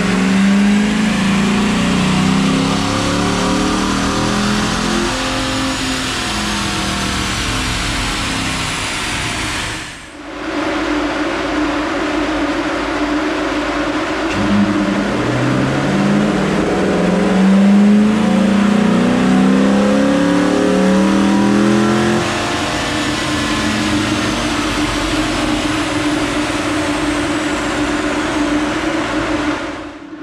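Dodge Durango R/T's 5.7-litre HEMI V8, fitted with a JLT cold air intake, making wide-open-throttle pulls on a chassis dyno. The engine note climbs steadily in pitch for several seconds and breaks off sharply about ten seconds in. It then climbs again in a second pull and settles lower for the last several seconds.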